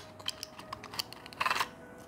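A small cardboard tablet box being opened and a blister strip pulled out: a string of light clicks and taps, with a short rustle about one and a half seconds in.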